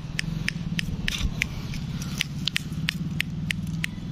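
Footsteps on a dry, leaf-strewn dirt path: short, crisp crunches and clicks about three to four times a second, over a low steady hum.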